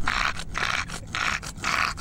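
Bulldog panting heavily and raspily into a close microphone, about two breaths a second.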